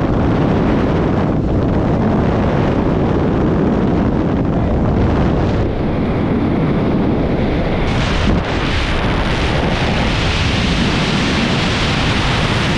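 Loud, steady rush of wind over the microphone, first at the open door of a skydiving plane and then in freefall after exit. The roar changes about six seconds in and again around eight seconds in, with a brief dip just after.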